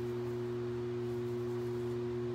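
A steady, unchanging electrical hum made of a few constant low tones.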